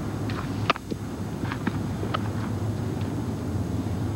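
A baseball bat striking a practice ground ball: one sharp knock under a second in, then a few fainter knocks, over a steady low outdoor hum.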